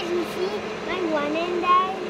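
A young child's high-pitched voice talking or babbling, not in clear words, over a steady low hum.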